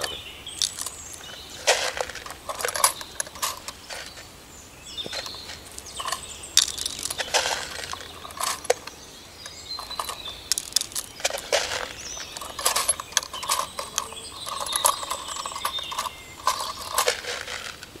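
Irregular clicks and crunches of a homemade plastic-tube hand seeder being pushed into damp garden soil and pulled out again, its beak opening to drop green bean seeds, as the row is sown.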